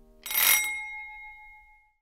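A single bright bell ding, struck once a moment in and ringing out with several clear tones that fade away over about a second and a half.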